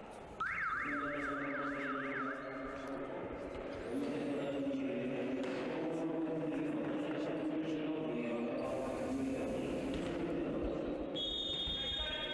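Music over the sports hall's PA. It opens with a warbling siren-like effect sweeping up and down several times a second, then carries on as a melody. Near the end a high whistle sounds, typical of a referee's whistle.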